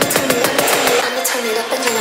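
Electronic dance track in a build-up section: a repeating, pitch-bending chopped vocal or synth riff over ticking percussion, with the bass dropping out about halfway through.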